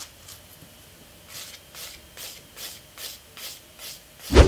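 A handheld nail file rubbing back and forth over a long stiletto gel nail in quick, even strokes, about two and a half a second, starting about a second and a half in.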